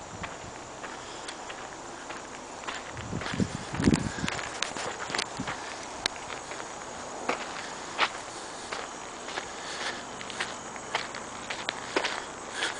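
Footsteps of a person walking on a sandy dirt road: an irregular run of short crunches and scuffs on sand and grit.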